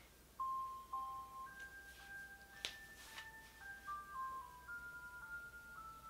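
Ice cream truck's chime jingle passing by outside, a simple melody of single bell-like notes that starts about half a second in and sounds really close.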